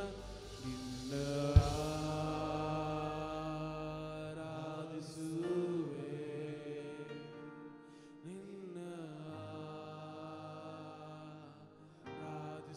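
Slow Kannada worship song: a man sings long drawn-out notes into a microphone over steady held backing chords. There is one sharp thump about one and a half seconds in.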